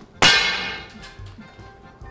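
An air rifle shot, its heavy pellet striking a pane of 6 mm window glass: one sharp crack followed by a ringing tone that fades over about a second. The pellet does not go through the glass.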